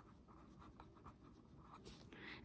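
Faint scratching of a pen writing a word on paper, in short irregular strokes.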